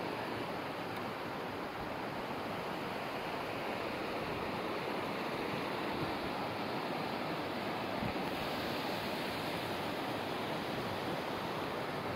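A rocky forest creek rushing, a steady, even hiss of flowing water.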